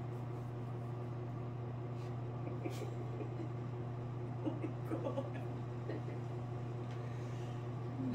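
Steady low hum in a small room, with a few faint clicks and a brief faint voice-like murmur about halfway through.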